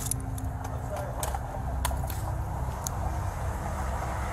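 Steady low rumble of idling vehicles with a faint steady hum, broken by a few sharp clicks.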